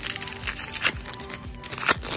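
Foil wrapper of a Pokémon trading-card booster pack crinkling and tearing as it is ripped open by hand, a string of sharp crackles with the loudest near the end. Faint background music plays under it.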